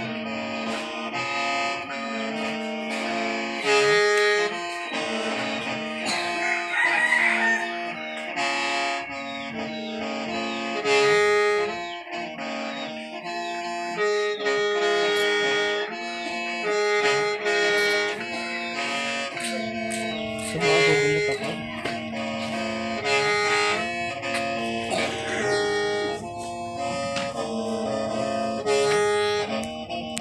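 Hmong qeej, a bamboo free-reed mouth organ, being played: several reed tones sound together as chords, stepping through short phrases with a recurring high note. It is being played as a test while the instrument is under repair.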